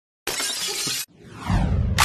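Glass shattering: a sudden crash of breaking glass lasting under a second that cuts off abruptly, followed by a falling, trailing sound with a low rumble building near the end.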